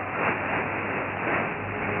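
Shortwave radio static and hiss from a weak AM broadcast on 3325 kHz, heard through a narrow receiver filter, with no clear programme audio.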